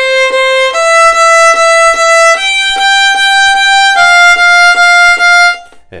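Solo violin playing détaché, four separate bow strokes on each note, moving through four sustained notes that step up and then drop back slightly. The strokes are even and full, with the bow kept firmly in the string through each bow change; the playing stops shortly before the end.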